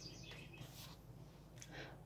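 Near silence, with a few faint brief rustles of a tarot card being drawn from the deck and handled.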